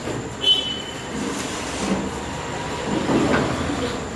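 Microphone stand being handled and adjusted while it is connected to a PA, giving rumbling handling noise and one short, loud, high squeal about half a second in.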